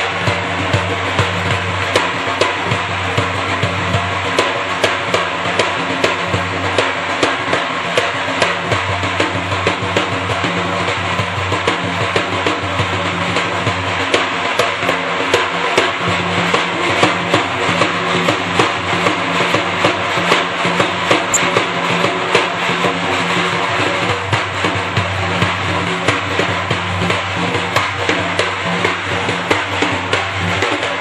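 Persian daf frame drum played solo: fast, dense strokes on the drumhead, with the metal ringlets inside the frame jingling along continuously.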